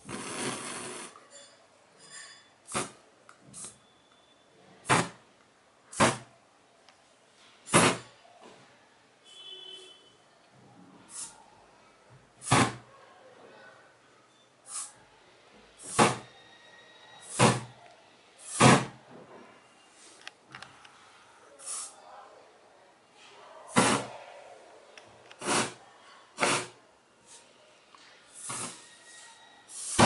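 Aerosol deodorant can sprayed in short bursts through a candle flame, each hissing spray catching fire as a brief fireball. About twenty bursts, roughly one a second, the first one longer.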